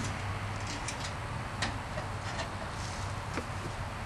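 A few light metal clicks and taps as an electric heat strip kit is fitted into an air handler cabinet, over a steady low outdoor hum.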